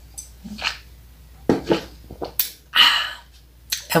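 A person drinking soda from a glass: short swallowing and mouth noises, a few sharp clicks as the glass is handled, and a breathy exhale about three seconds in.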